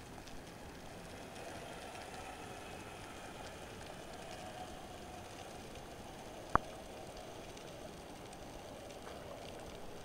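Underwater ambience picked up by a submerged camera: a steady faint crackling hiss, with one sharp click about six and a half seconds in.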